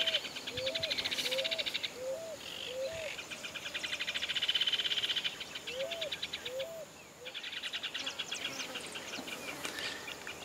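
Begging calls of a fledgling bird: rapid buzzy trills in three bouts, with a separate run of short, low, hooked notes repeated about twice a second beneath them.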